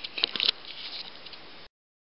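A few quick scratchy rustles as a gerbil scrabbles in shredded paper bedding, followed by low hiss that cuts off abruptly to silence near the end.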